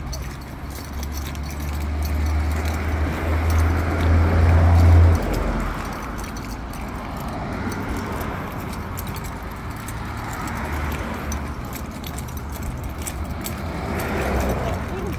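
Street traffic passing on the road beside the sidewalk, the sound of cars swelling and fading. A deep rumble builds over the first few seconds and stops abruptly about five seconds in.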